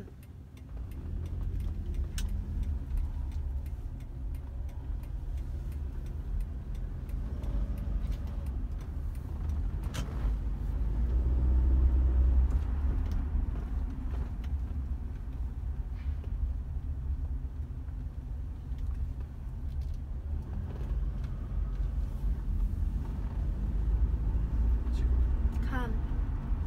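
Car engine and tyre rumble heard from inside the cabin of an automatic car being driven. The rumble grows louder about ten seconds in, peaking a couple of seconds later as the car speeds up, then settles back to a steady cruise.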